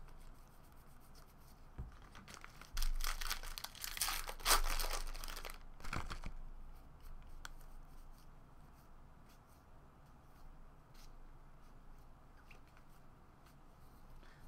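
A trading-card pack wrapper being torn open, a loud rustling tear and crinkle from about three to six seconds in. Faint light clicks of cards being slid through the hands follow.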